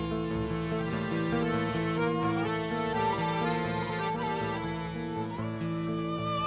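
Live Argentine folk ensemble playing: accordion holding chords and melody, with violin and nylon-string guitar.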